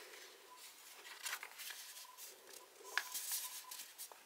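A sheet of printer paper rustling as it is folded closed over an inked string and pressed down by hand, in soft irregular scrapes with one sharper tap about three seconds in.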